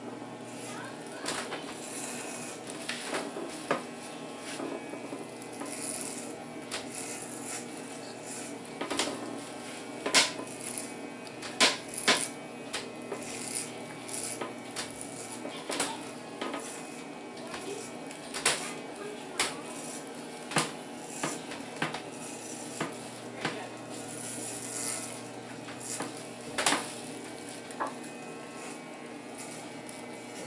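Corded electric hair clipper with a number two guard buzzing steadily as it is run over a toddler's scalp. Many short, sharp clicks and knocks sound over the buzz.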